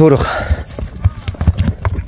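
Hooves of a ridden horse striking dry, ploughed earth, a quick, uneven run of hoofbeats as the horse turns and moves off.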